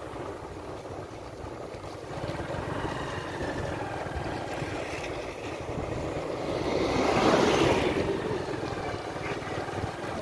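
Motorcycle running along a road, its low engine rumble mixed with a rush of wind on the microphone. The rush swells to its loudest about seven seconds in and then eases.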